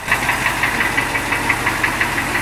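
Humvee's 6.5-litre V8 diesel engine idling with a rapid, even diesel clatter.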